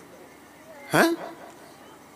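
A man's voice at a microphone: a pause in speech broken about a second in by a single short, sharp vocal sound rising in pitch, with only faint room sound around it.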